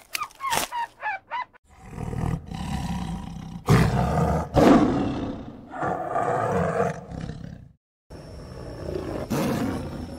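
Tiger roaring and growling: a run of long, rough calls, loudest about four to five seconds in, cut off sharply, then a lower, quieter call near the end. In the first second and a half, short squeaky squirrel chirps.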